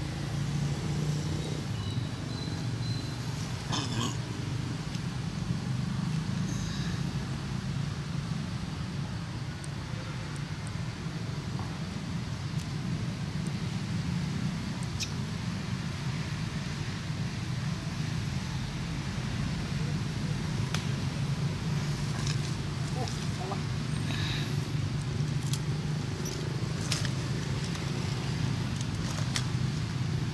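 A steady low hum, the loudest thing throughout, with scattered light clicks and rustles over it.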